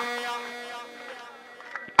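A man's amplified sung note through a PA system dies away in its echo, leaving a faint steady hum, with a few faint clicks near the end.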